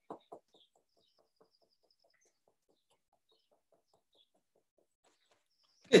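Fingertips tapping rapidly on the top of the head, an even run of short dull taps about four to five a second that fades out about four seconds in.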